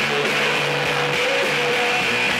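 A rock band playing live, with strummed electric guitar over a bass line that steps between notes, in a loud, dense mix.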